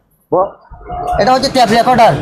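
A voice speaking, starting after a brief moment of silence at the very start.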